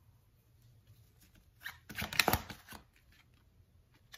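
Tarot cards being handled: a short flurry of papery rustling and snaps about two seconds in as a card is drawn from the deck and laid onto the spread.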